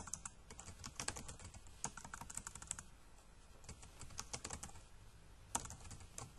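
Typing on a computer keyboard: irregular keystrokes in short runs separated by brief pauses.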